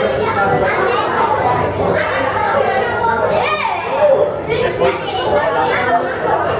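Overlapping chatter of several people, children's voices among them, with a high voice rising sharply about three and a half seconds in.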